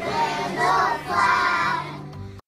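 A class of young children singing together in unison, their voices tailing off near the end.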